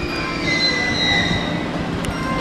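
Electric commuter train standing at a station platform, with high-pitched whines that hold steady and drift slightly down in pitch over a constant background of rail-station noise.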